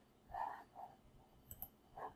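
Faint computer mouse clicks: a quick pair of clicks about a second and a half in, with a few fainter soft sounds before them.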